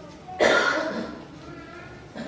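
A person coughing once, sharply, about half a second in, the sound fading within about half a second.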